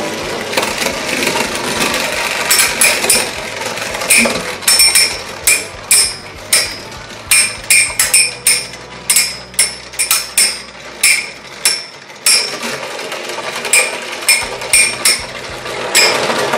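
Two metal-rimmed toy battle tops spinning in a plastic stadium and repeatedly colliding: sharp metallic clacks with a brief ringing edge over a steady whirring hiss, coming thick and fast through the middle and thinning out near the end.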